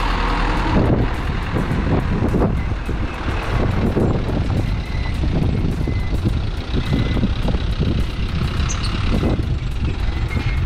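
Light flatbed truck loaded with sacks of salt driving past close by and pulling away down the road, its engine and tyre noise loudest in the first second and then easing off. A faint electronic beep repeats about once a second underneath.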